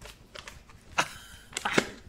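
A paper banknote being handled and lifted, giving a few short, sharp crinkling clicks: one about a second in and a quick cluster near the end.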